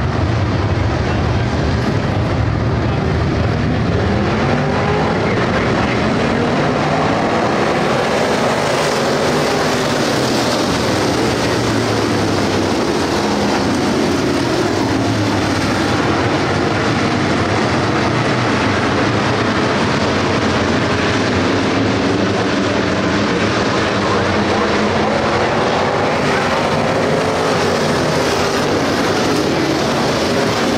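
A pack of dirt-track race car engines running together, their pitch rising and falling as the cars sweep past.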